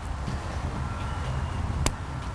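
The last helical leg of a preformed GUY-GRIP dead-end, wrapped by hand onto a steel guy wire, snapping into place with one sharp click near the end, over a low steady rumble.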